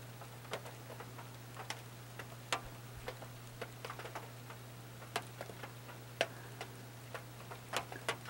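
Scattered sharp clicks and ticks at irregular intervals over a steady low electrical hum.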